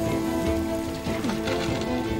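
Dramatic score with long held notes over a steady crackling, hissing fire.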